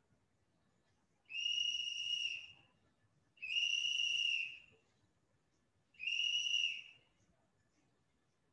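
Three steady, high-pitched whistle tones, each about a second long, with a slight hiss around each and short gaps between them.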